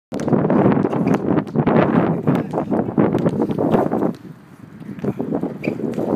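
Wind buffeting the microphone, easing off suddenly about four seconds in, with the thuds of a basketball being dribbled on an outdoor court.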